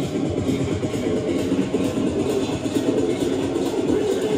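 Electronic dance music from a live DJ mix on CDJ decks and a mixer, playing continuously.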